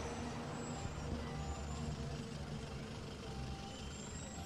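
Street traffic: a steady low engine rumble from road vehicles.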